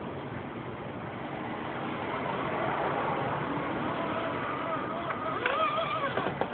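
Axial SCX10 radio-control crawler driving on a concrete floor: the whine of its electric motor and gears with tyre noise, growing louder in the middle as it passes close, with a few sharp clicks near the end.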